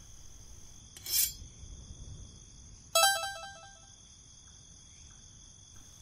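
Steady night-time cricket chirring in the background, with a brief rustle about a second in and, about three seconds in, a short electronic chime of a few quick notes, like a phone notification.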